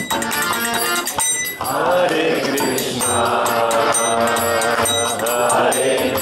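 Devotional kirtan: a harmonium and a violin accompany a chanted mantra, with voices singing from about a second and a half in and light metallic percussion keeping time.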